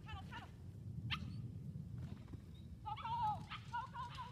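A dog giving a string of high-pitched excited barks and yips while running an agility course: a few near the start, a sharp one about a second in, and a quicker run of wavering yips near the end.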